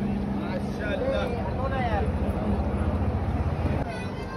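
A steady low rumble with a constant hum, and people's voices talking in the background.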